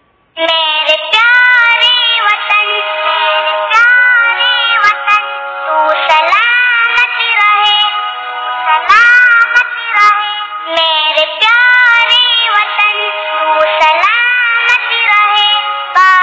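A child singing a song with music, a melody of held and gliding notes that starts just under half a second in.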